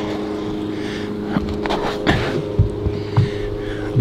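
A steady low hum made of several held tones, with a few light clicks and knocks over it.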